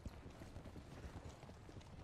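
Hooves of several horses walking, a faint, irregular clip-clop of many overlapping hoof strikes.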